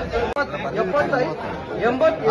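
Several men talking over one another: the chatter of traders calling out bids at a tomato auction, with a brief cut about a third of a second in.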